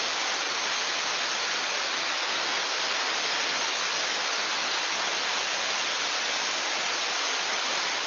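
Steam blowing off through a boiler's safety valve as a steady, very loud hiss. The valve has lifted under test pressure of 14.0 kgf/cm² on an ATA MP813 boiler and is venting straight to the atmosphere. It is heard through a video-call screen share.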